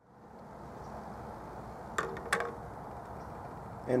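Two sharp metal clinks about a third of a second apart, each ringing briefly, as an aluminum bus bar is set down on the rim of a stainless steel cup, over a steady low background noise.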